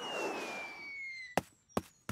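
Cartoon sound effect of a golf ball flying through the air: a whoosh with a thin whistle that falls gently in pitch, cut off by a sharp tap about one and a half seconds in as the ball lands, and a second tap just before the end.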